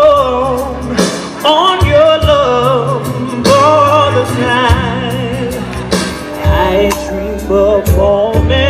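Live soul/R&B performance through a PA: a woman sings lead into a handheld microphone with wavering, sliding vocal runs. A band backs her with bass and drums.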